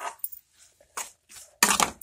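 Metal spoon knocking and scraping against a non-stick frying pan while stirring soaked red chillies and tomato pieces: a few separate clinks, then a louder scrape near the end.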